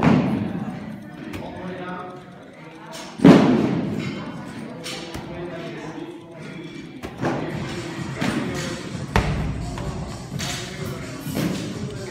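Heavy thuds of CrossFit equipment echoing in a large hall, two loud ones at the start and about three seconds in, then several lighter knocks. Background music and voices run underneath.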